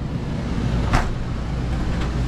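Furion RV air conditioner running, a steady low rumble of blower and compressor noise, with a single sharp click about a second in.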